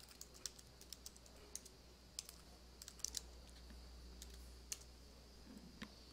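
Faint, irregular clicks of typing on a computer keyboard, over a steady low hum.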